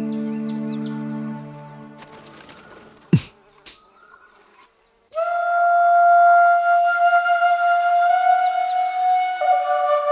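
Background music: a held chord fades out over the first two seconds, a single sharp hit sounds about three seconds in, and after a short near-silent gap a loud, long flute note begins about five seconds in and steps down in pitch near the end. Short bird chirps sound high above the flute.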